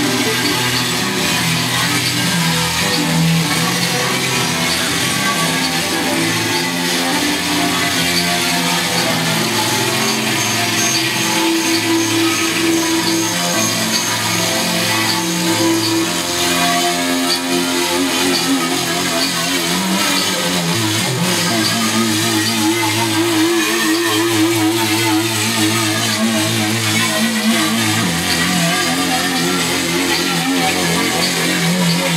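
Electric guitar played live over electronic backing from a laptop, forming a dense, steady wall of sustained tones. A warbling tone wavers through the second half.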